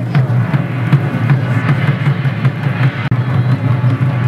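Japanese taiko drums beating in a steady, continuous rhythm of deep strikes.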